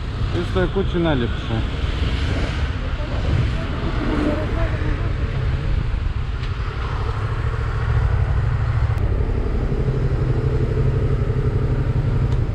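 Yamaha MT-07's parallel-twin engine running steadily at low speed, a low rumble that grows a little stronger in the last few seconds.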